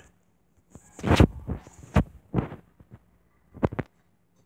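A handful of dull thumps close to the microphone, about five in all: the loudest about a second in, then two in quick succession near the end.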